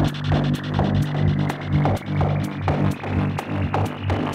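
Progressive techno from a DJ set: a steady, pulsing bassline and kick under regular hi-hat ticks, with a rising sweep that steadily brightens the track.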